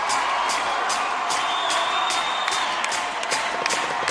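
Music intro: a steady high ticking beat, about four ticks a second, over a hissing wash of sound.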